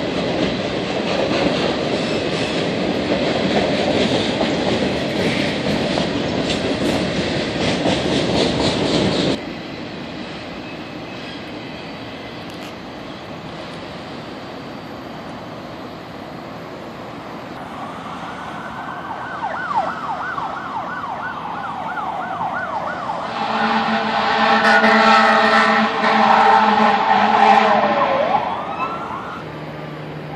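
A train running past on the tracks, with a steady clatter, for about nine seconds before it cuts off abruptly. About eighteen seconds in, an emergency-vehicle siren starts wailing up and down. Near the end a loud multi-tone horn chord sounds for several seconds over it.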